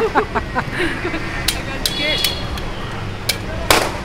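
Glass soda bottles clinking and tapping, with a few sharp clinks, one left briefly ringing, then near the end a short, loud fizzing pop as a bottle of lemon soda is opened. Street traffic rumbles underneath.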